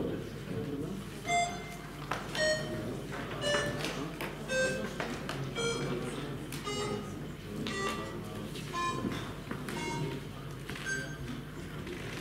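A slow electronic melody of single short notes, about one a second, played by the electronic voting system while the vote is open, over low room murmur.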